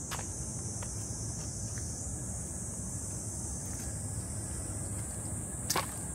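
Cicadas singing in chorus, a steady high-pitched drone throughout, over a low background rumble. A sharp click comes near the end.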